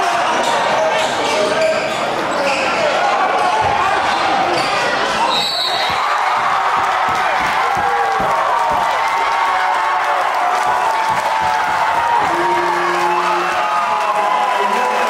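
Crowd in a school gymnasium at a basketball game, many voices shouting and cheering without pause, with a ball bouncing on the hardwood during play. A short high whistle sounds about five seconds in, and a steady low horn tone near the end.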